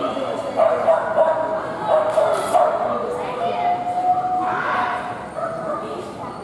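A dog barking and yipping as it runs an agility course, with voices in the background.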